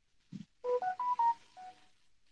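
Computer chat-notification chime: a quick run of several clean electronic beeps at different pitches, signalling an incoming chat message, after a brief low thump.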